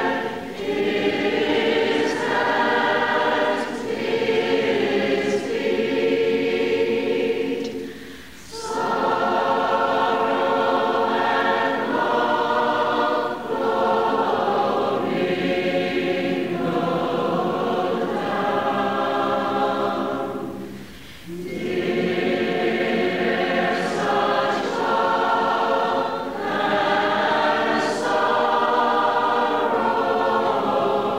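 Choir singing a slow sacred piece in long held phrases, with a brief break between phrases about eight seconds in and again about twenty-one seconds in.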